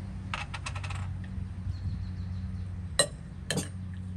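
Tableware clinking as food is served: a quick run of light clinks near the start, then two sharper clinks of spoon on ceramic or glass about a second from the end, over a steady low hum.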